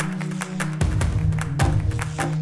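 Intro jingle music with a steady bass note and a fast, even percussive beat, with a heavy low hit under a second in.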